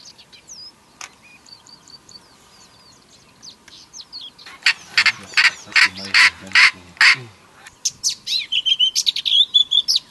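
Northern black korhaan calling: a loud call repeated about three times a second for a couple of seconds, then a faster run of calls near the end. Faint small-bird chirps come before it.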